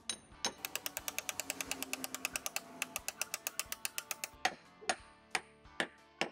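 A hammer pounding a half-inch steel carriage bolt through a drilled wooden 4x4 post: four sharp blows about half a second apart near the end. Before them, a fast, even ticking of about ten a second with a faint steady tone under it.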